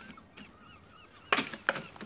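Homemade wooden seesaw balance tipping as a turnip is set in its hanging pan: a sharp clunk about a second and a half in, followed by a smaller knock, as the pan and its chains drop.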